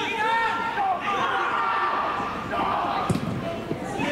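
Players' shouts and calls on a floodlit football pitch, with a single sharp thud of a football being struck hard about three seconds in.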